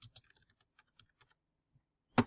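Faint computer keyboard typing: a quick run of about a dozen keystrokes that stops a little past halfway.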